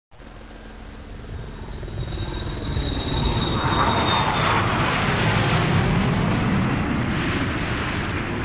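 Cinematic logo-reveal sound effect: a deep rumbling whoosh that swells over the first three seconds and then holds steady, with a thin high whistle from about two to four and a half seconds in.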